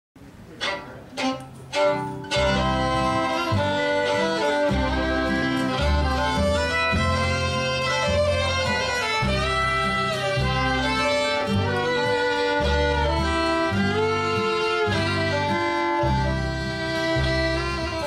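Three short, sharp knocks in the first two seconds, then a country string band kicks in: two fiddles playing the lead over upright bass and acoustic guitar.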